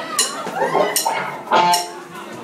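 Live rock band with drum kit and electric guitar playing the opening of a song, with several loud cymbal-and-drum hits.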